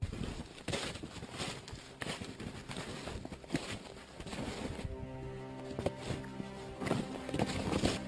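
Snowshoes crunching through snow in a steady walking rhythm, about two steps a second. Background music comes in about five seconds in.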